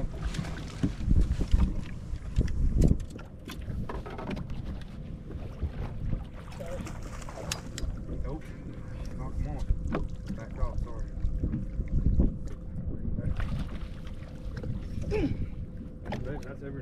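Wind rumbling unevenly on an action camera's microphone, strongest in the first few seconds, with scattered short knocks and faint, indistinct voices. A faint steady hum runs underneath.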